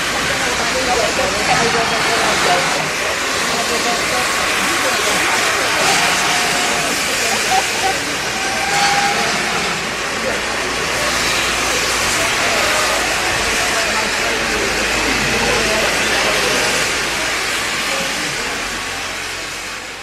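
Steam locomotive standing still and venting steam in a steady, loud hiss, with onlookers' voices over it. It fades out near the end.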